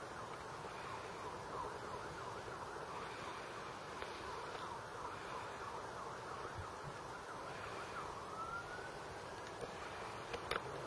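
Faint outdoor background with many short high chirps throughout, and one tone rising slowly in pitch from about eight seconds in, typical of a distant siren.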